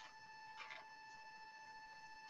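Near silence: faint line noise with a steady, thin, high-pitched tone.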